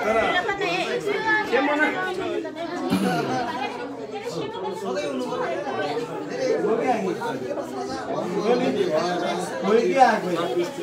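Several people talking at once: the overlapping chatter of a small seated group.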